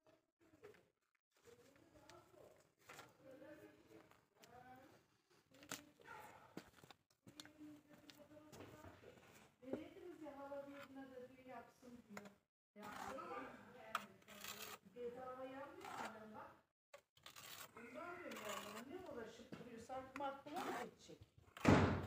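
A person's voice talking at a low level, in phrases with pauses, with a few sharp clicks and knocks in between.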